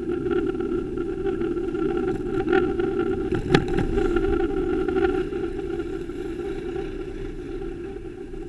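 City traffic and riding noise picked up by a bicycle-mounted black box camera: a steady rumble with a faint hum running through it, and one sharp click about three and a half seconds in.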